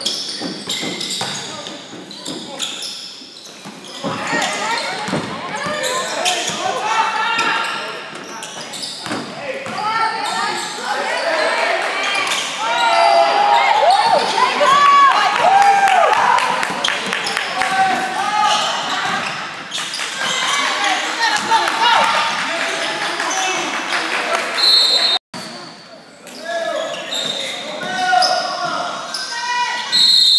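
Basketball game in a large gym: a ball being dribbled on the hardwood floor under a steady wash of voices from spectators and players, echoing in the hall. The sound cuts out abruptly for a moment near the end.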